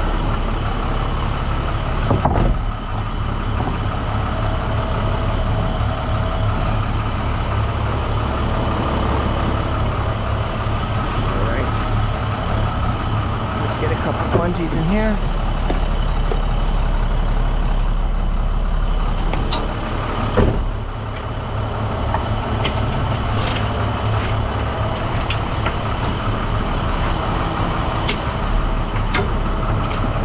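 Roll-off truck's engine running steadily, with scattered knocks and rattles and a brief wavering tone about halfway through.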